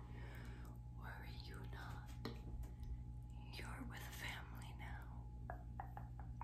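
A woman whispering softly, over a faint steady low hum.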